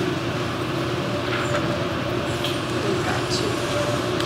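Steady room noise in a large hall: a continuous low hum, with faint, indistinct voices.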